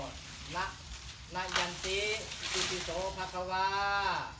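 A man chanting a Thai-Pali incantation (katha) in long, drawn-out pitched phrases with short breaks between them. The words ask leave to cut an elephant's tusks. A steady hiss runs underneath.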